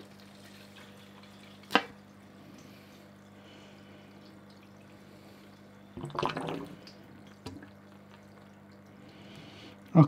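Priming a Superfish Eco 120 canister filter by sucking on its outlet hose. A sharp click comes about two seconds in, then a short burst of suction and water sound about six seconds in as water is drawn through the hose, over a faint steady low hum.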